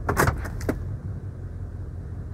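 Low steady rumble of a 6.6-litre Duramax LML V8 diesel idling, heard from inside the cab, with a brief sharp noise near the start and a smaller one just after.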